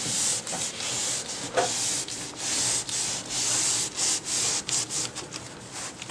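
Cloth rag rubbing tinted wood stain into mahogany molding and desktop, in a run of repeated back-and-forth scrubbing strokes.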